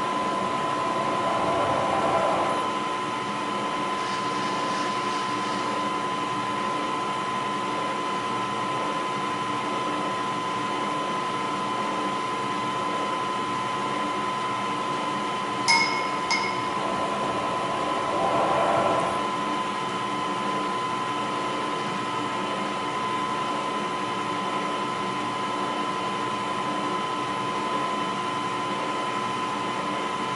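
Vertical milling machine running steadily with a constant whine while drilling a series of holes in a metal bar. The sound swells twice, about two seconds in and again near nineteen seconds, as the bit cuts, and there is one sharp metallic clink just before sixteen seconds.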